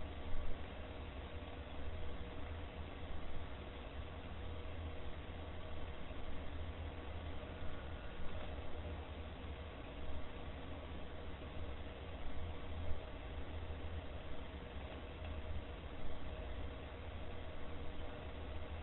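Steady room tone of a surveillance-camera recording: even hiss over a low hum, with a few faint steady tones and small irregular rises in level.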